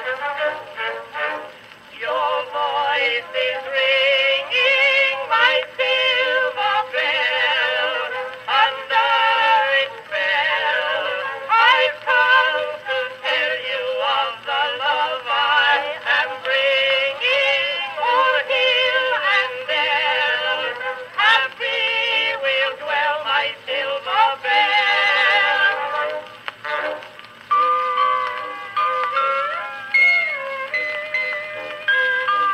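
Edison Blue Amberol cylinder from 1912, a soprano-and-tenor duet song with orchestra, playing on a 1915 Edison Amberola 30 phonograph. The sound is the narrow, thin range of an early acoustic recording, with little bass or treble.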